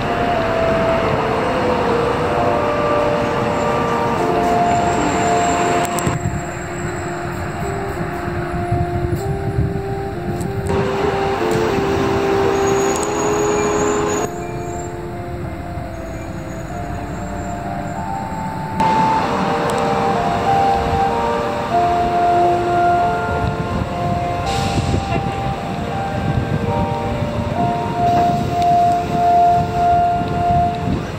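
Street traffic noise, with a tune of held notes, stepping from one pitch to the next, playing over it.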